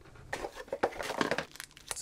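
Plastic packaging bag crinkling in a run of short, irregular rustles as it is handled.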